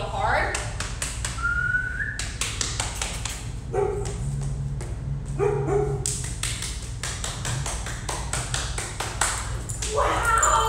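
Dogs barking a few short times, over many sharp taps and a steady low hum.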